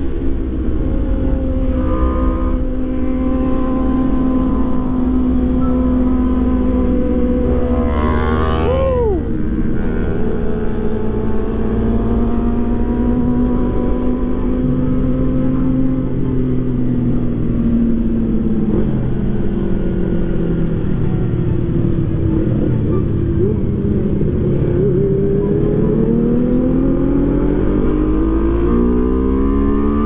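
Single-cylinder-free, multi-harmonic sport motorcycle engine heard from the rider's position, holding steady cruising revs with a constant low wind rumble on the microphone. About nine seconds in there is a quick rise and fall in pitch. Near the end the revs dip and then climb steadily as the bike accelerates.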